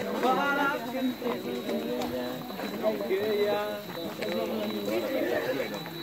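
A group of young people chattering as they walk, several voices talking over one another indistinctly.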